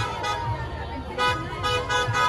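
Car horns honking, with several steady horn tones overlapping, over a crowd of shouting voices and traffic noise.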